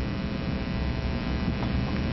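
Steady electrical mains hum with a buzzy stack of overtones, strongest at the low end.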